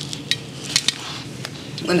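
Cutlery and plates clinking, a few light separate clinks.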